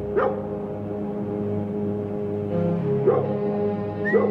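Ominous background music with sustained low chords. Two short, sharp pitched calls cut through it, one about a quarter second in and one about three seconds in.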